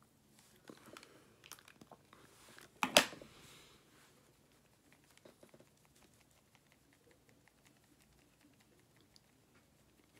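Close-up handling noises of makeup being applied: soft taps and rustles, with one sharp double knock about three seconds in, like a small object being set down or capped, then faint light ticks.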